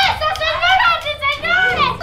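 Excited, overlapping voices, high-pitched children's voices among them, calling out in reaction.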